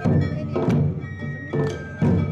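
Awa Odori accompaniment music: drums struck in a steady dance rhythm, three strong beats, under a held high melody line.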